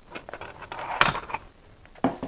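Airgun stock tubes and parts clinking and knocking as they are handled and set down on a table, a string of short clicks with one louder knock about a second in.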